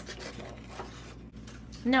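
Faint, soft rustling of a sheet of paper being handled. A woman says "Now" near the end.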